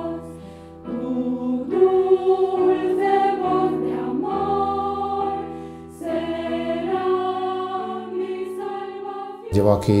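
Mixed choir of women's and men's voices singing in long held chords that change about once a second. The singing cuts off just before the end as a man starts speaking.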